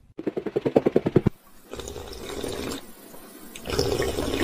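Cartoon drinking-fountain water sounds: about a second of rapid gulping, then a steady hiss of running water, then a louder spray near the end as the water is spat out.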